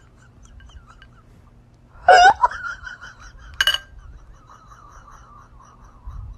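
A short laugh-like vocal burst about two seconds in, and a brief sharp sound at about three and a half seconds, over a low steady hum.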